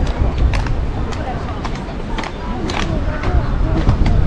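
Voices of passers-by talking over a low rumble of wind on the microphone, with footsteps on a wooden boardwalk about twice a second.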